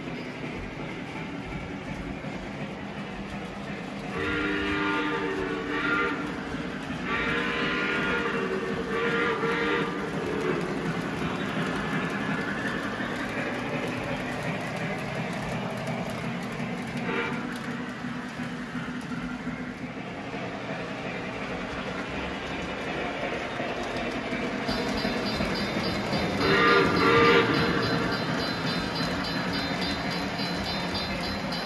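A Lionel O-gauge model train running steadily on three-rail track with a rolling rumble. Its locomotive's onboard sound system sounds a chord horn three times in the first ten seconds, then once more, loudest, near the end.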